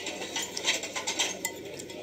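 Cutlery clinking and scraping against a plate: a run of quick light clinks in the first second and a half, over the steady murmur of a restaurant dining room.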